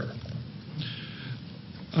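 A pause in a man's speech: low, steady room noise picked up by the microphones, with a faint short sound about a second in.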